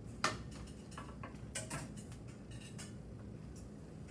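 A few light knocks and clinks of kitchen items being picked up and handled at a counter, the sharpest about a quarter second in, over a low room hum.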